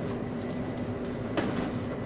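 Stainless steel stovetop coffee percolator perking on a gas burner while the coffee brews: a steady gurgling rumble with a faint low hum. Two light clicks come about half a second and a second and a half in.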